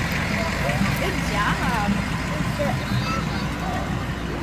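Fire truck engine running with a steady low drone as the truck passes close by, with scattered voices around it.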